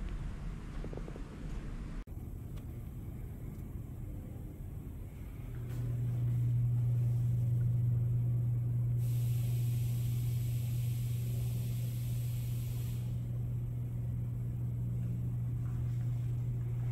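A steady low machine hum sets in about five seconds in and holds to the end, with a hiss laid over it for a few seconds in the middle.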